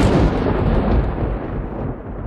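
The dying tail of a loud boom sound effect on the channel's intro: a broad rumble that fades away slowly, its high end going first.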